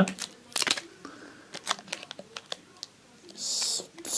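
Small objects being handled by hand: a few scattered light clicks and taps, then a short rustle near the end.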